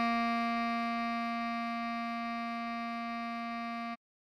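Bass clarinet holding one long tied note, a written C that sounds as the B-flat below middle C. The tone stays steady, fades slightly, and stops just before the end.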